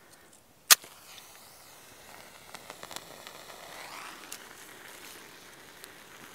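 A stormproof match struck once against the striker strip of its plastic waterproof case, a sharp scrape less than a second in, then flaring with a steady hiss. A few small crackles follow as the flame catches a dry-grass tinder bundle.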